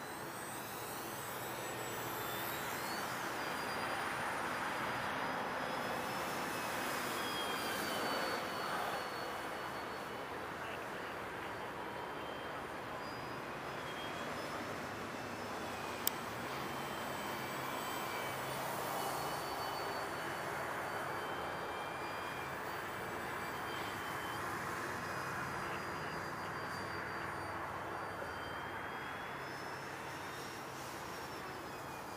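Durafly T-28 V2 electric RC model plane flying, its brushless motor and propeller making a steady whine with high tones that slowly rise and fall as it passes. A single sharp click about halfway through.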